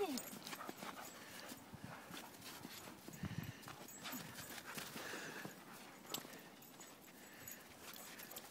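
A dog's paws crunching and scrabbling in snow as it bounds and digs, in scattered faint crunches.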